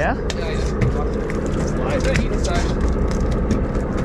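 A fishing boat's engine idling, a steady low hum, under scattered sharp clicks and knocks.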